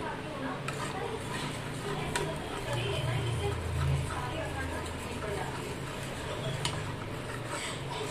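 Flat metal spatula stirring melting butter and oil in a metal kadai, scraping the pan, with a couple of sharp clicks of metal on metal. A steady low hum runs underneath.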